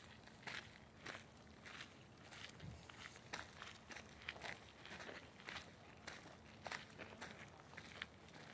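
Faint footsteps on a gravel-and-dirt path, about two crunching steps a second.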